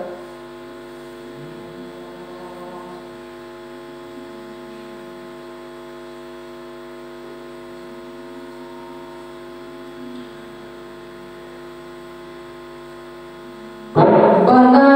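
Steady electrical mains hum from the microphone and loudspeaker sound system, a stack of even, unchanging tones with nothing else over it.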